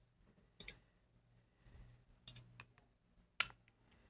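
A few short, scattered clicks at a computer as screen sharing of a presentation is started. There is a pair of clicks early, a small cluster in the middle, and the loudest single click near the end.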